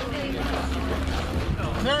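Low wind rumble on the microphone, swelling for about a second near the middle, under faint chatter of players' voices.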